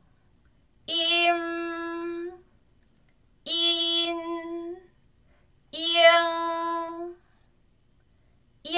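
A high voice pronouncing three separate drill syllables of Taiwanese nasal finals, each held on a steady, level pitch for about a second and a half, with short silent pauses between them.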